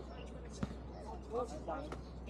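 A basketball bounces once on a hard court a little over half a second in, with players' voices in the background.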